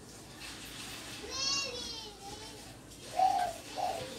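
Faint high-pitched background voice, like a child's, about a second in, then a louder, lower call near the end.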